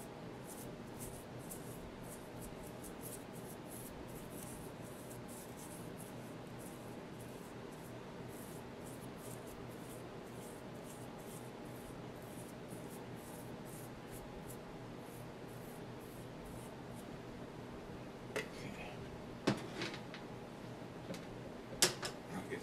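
Small brush stroking over an oil-based clay sculpture, a series of soft, quick scratches as lighter fluid is brushed on to smooth the surface, over a steady low hum. A few sharp knocks near the end.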